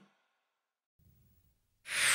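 Near silence: a gap between the end of the intro music and the start of the outdoor footage. Just before the end, outdoor background noise fades in.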